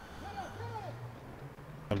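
Faint football-pitch ambience in a pause of the commentary: a low steady hum under a few faint, distant voices.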